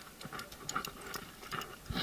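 Faint, irregular small clicks and rustling close to the microphone: climbing rope, carabiners and harness being handled, with the fabric of a jacket rubbing.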